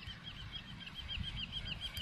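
A small bird calling in a rapid, even series of short high chirps, about six a second, over a faint low rumble of wind.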